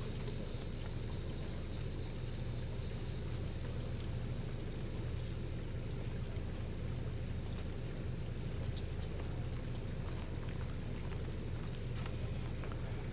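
Steady outdoor background noise: a low rumble with a faint high hiss that fades out about five seconds in, and a few faint ticks.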